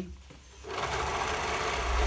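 Overlocker (serger) starting up about two-thirds of a second in and running steadily as it stitches along the edge of fabric, a fast even whir over a low motor hum.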